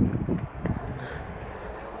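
Wind buffeting the microphone as a low rumble, strongest in the first half second, then settling to a quieter, steady background.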